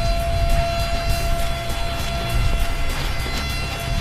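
Background music with a fast, steady beat over a long held high note and a heavy bass.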